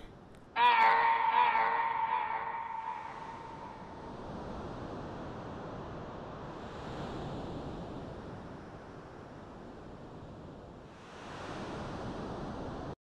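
A ringing, chime-like tone starts suddenly about half a second in and fades away over roughly three seconds. A steady rushing background noise follows, growing a little brighter near the end.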